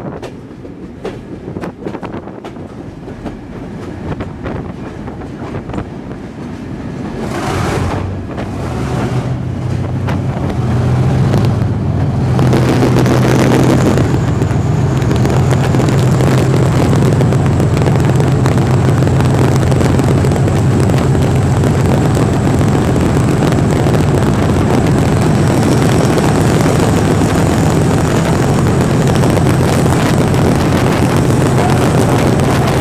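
Train wheels clicking over rail joints beneath a guards van, heard from its open veranda; about seven seconds in the running noise swells into a loud, steady rumble as the train runs into a tunnel. From about halfway a thin, steady high tone runs through the rumble.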